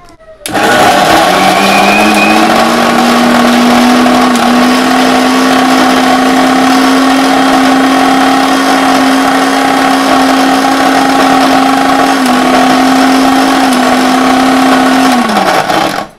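Electric mixer grinder's motor running with its steel jar full of peanut butter paste, on a final grind to smooth it. It starts about half a second in and rises in pitch as it comes up to speed, then holds steady with a couple of small dips near the end. It winds down as it is switched off at the end.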